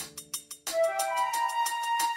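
Background music: held melody notes over a light, regular ticking beat. It starts about half a second in, after a brief fade.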